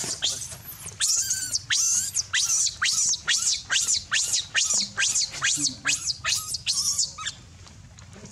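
Baby macaque crying: a rapid run of shrill screams, each falling sharply in pitch, about two to three a second, that breaks off about a second before the end.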